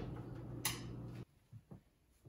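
Stainless steel oven door swung shut, closing with one sharp clunk about two thirds of a second in, over a steady low hum. The hum cuts off abruptly a little after, leaving only a few faint soft ticks.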